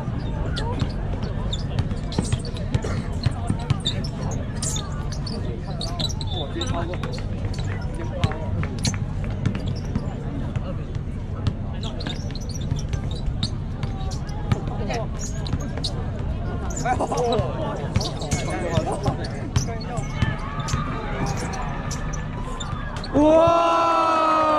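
A basketball bouncing on a hard outdoor court during a game: irregular sharp thuds of dribbling over a steady low rumble and spectators' chatter.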